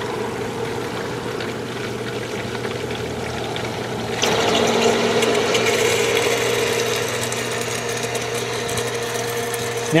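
Green Expert 1/3 HP submersible sump pump running with a steady electric hum as it pumps shallow water out of a garbage can. About four seconds in it gets louder and a rushing hiss is added, as the water level falls around its base and it starts drawing air along with the water.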